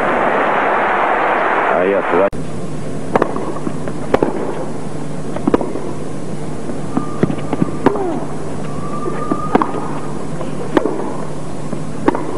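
Crowd applause for about two seconds, cut off sharply, followed by a tennis rally: racquets striking the ball with a sharp pop every second or so over the crowd's background murmur.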